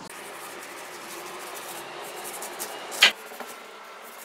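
Kitchen knife cutting through a pineapple's rind at the crown end on a wooden chopping board, a steady scraping cut with small ticks. One sharp knock about three seconds in as the cut goes through.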